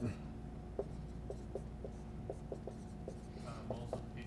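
Dry-erase marker writing on a whiteboard: a series of faint, short strokes as letters are written, over a steady low room hum.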